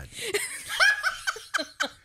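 A person laughing in a string of short, high-pitched bursts.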